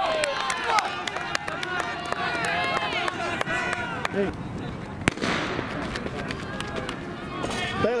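Spectators' voices talking and calling out outdoors, with one sharp crack about five seconds in, a starting pistol fired for a race.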